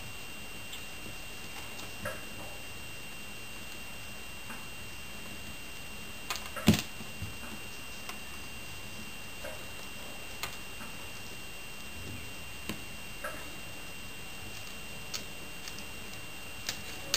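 Faint, scattered clicks of small metal tubes and beads being handled and threaded onto thin wire, with one sharper click about six and a half seconds in, over a steady low hiss.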